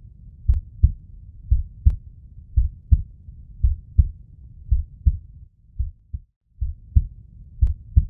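Heartbeat sound effect: low double thumps, about one pair a second, with a brief break a little past six seconds.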